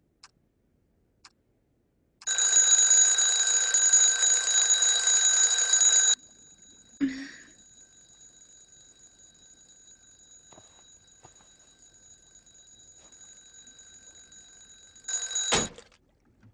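Alarm clock ringing, loud and steady for about four seconds, then cutting off abruptly. After a thud the ring goes on faintly, and near the end it rings loudly again for a moment before stopping with a thud.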